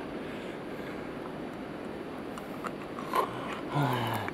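Quiet room tone with a few faint small clicks of a person eating, then a low grunt-like voice sound near the end.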